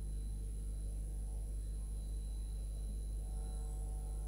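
Steady low electrical hum, with a faint thin high whine above it and no other sound.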